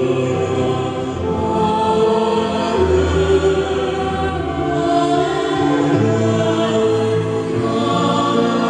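Small choir of men and women singing into handheld microphones, amplified over loudspeakers, in long held notes.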